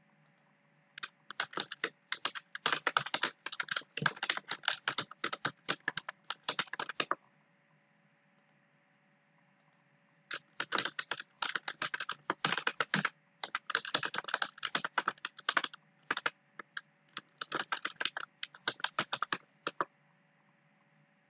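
Typing on a computer keyboard in two runs of rapid keystrokes: one from about a second in to about seven seconds, and a second from about ten seconds to almost the end, with a short pause between them.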